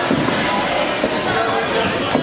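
Several people talking and calling out over one another in an echoing gym hall, with a single sharp smack about one and a half seconds in.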